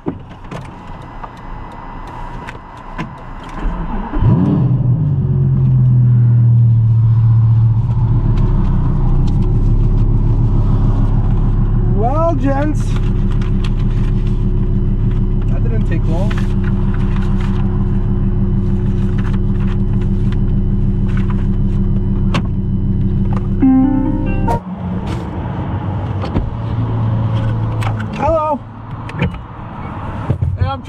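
Lamborghini engine starting about four seconds in and running at a fast idle, then settling to a steady lower idle about eight seconds in, heard from inside the cabin. The sound cuts off abruptly near the end.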